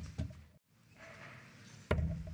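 A steel-tip dart striking a bristle dartboard once, a sharp thud near the end, after a softer knock just after the start; the sound drops out completely for an instant in between.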